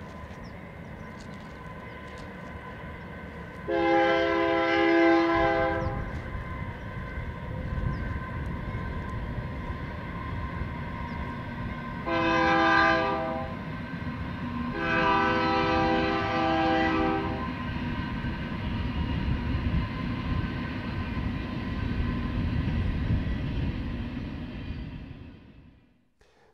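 Train horn sounding three blasts, long, short and long, over the steady low rumble of a train. The sound fades out near the end.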